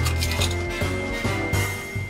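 Background music with a repeating bass line and sustained notes.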